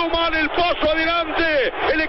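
A man commentating on football in Spanish, talking fast in a raised, high-pitched voice.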